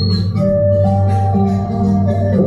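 Band music, with long held keyboard-like notes over a steady bass line.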